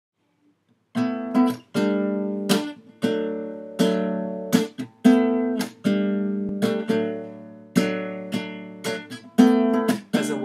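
Acoustic guitar strumming an intro, starting about a second in: a series of chords struck roughly once a second, each ringing out before the next stroke.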